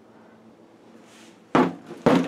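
A work boot stamping down onto the snowmobile's rusty sheet-metal floor pan, one sudden thud about one and a half seconds in. It is testing the corroded pan, which holds firm.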